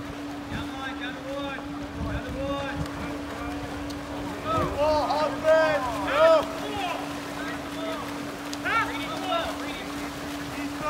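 Spectators yelling from the pool deck, loudest about halfway through, over the splashing of swimmers sprinting down the pool. A steady low hum runs underneath.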